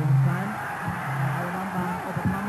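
Boxing-arena crowd noise: many voices shouting at once over a steady low drone.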